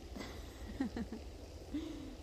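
Faint, brief human voice sounds: a few short murmurs about a second in and a short vocal sound near the end, over a steady low background rumble.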